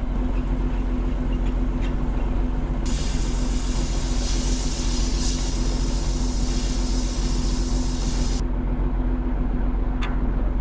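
Large farm tractor's engine running steadily, with a loud hiss that comes in abruptly about three seconds in and cuts off just as abruptly about eight seconds in.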